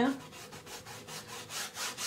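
Large flat bristle brush rubbing across a stretched primed canvas, pulling light strokes of acrylic paint in a quick run of short brushing passes.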